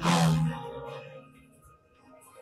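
A train rushing past in a film soundtrack: a sudden loud whoosh that sweeps down and fades away within about a second. Film music continues faintly under it.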